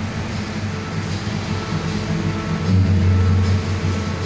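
A recorded train sound effect on the mime's playback soundtrack: a continuous low rumble of a running train, growing a little heavier just under three seconds in.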